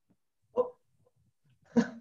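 A dog barks twice: two short barks a little over a second apart, the second louder.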